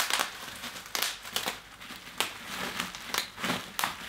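Bubble wrap being popped between the fingers: a string of sharp single pops at irregular intervals, roughly one or two a second, with light crinkling of the plastic in between.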